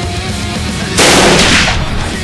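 Heavy metal music with a single loud shotgun blast about halfway through, its boom dying away over most of a second.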